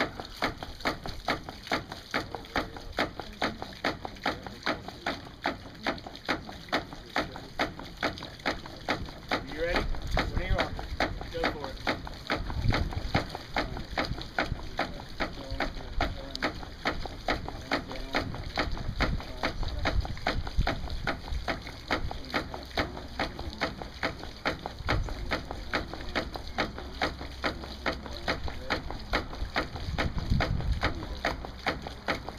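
Homemade hydraulic ram pump cycling with a quick, even rhythm of clacks, each beat a pulse of its water-hammer cycle, while its pulsed output runs into a plastic gallon jug.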